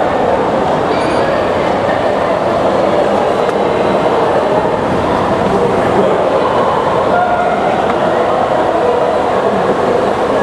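Steady, loud wash of heavy rain and city noise, with an indistinct murmur of voices in it.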